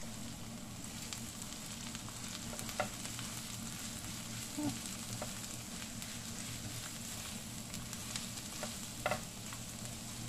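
Diced white onions sizzling in oil in a non-stick frying pan, stirred with a spatula. A steady frying hiss with a few short knocks of the spatula against the pan.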